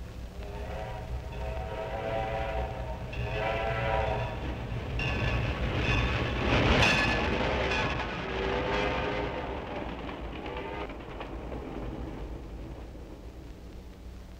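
Steam train passing at speed, its whistle sounding in several separate blasts over the rush of the train. The rush swells to a peak about halfway through and then fades away.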